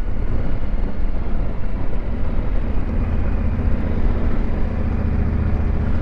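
Yamaha Ténéré 700's parallel-twin engine running steadily at low revs as the motorcycle rolls along, its note holding even from about two seconds in.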